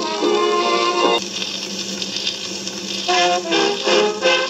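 Jazz band recording played from a shellac 78 rpm record on a turntable. About a second in the band's tune drops away, leaving a quieter, hissy stretch, and the instruments come back in about three seconds in.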